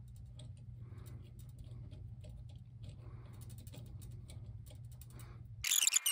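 Faint small clicks and rubbing of a plastic finial being screwed by hand into a metal wind spinner's hub, over a low steady hum. A brief loud noise near the end.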